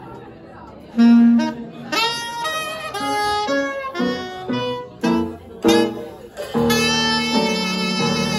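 A wind instrument playing a live jazz phrase: quiet at first, then a run of short separate notes starting about a second in, settling into longer held notes near the end.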